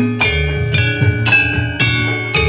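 Javanese gamelan music: the bronze bars of a saron metallophone struck with a wooden mallet, a quick run of ringing notes several a second, over low drum beats.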